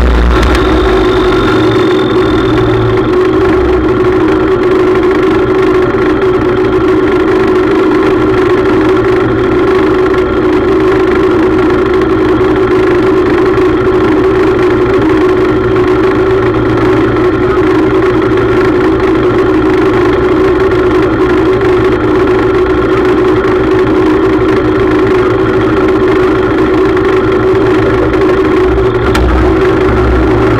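Small racing tractor's engine idling steadily, close to a camera mounted on the tractor.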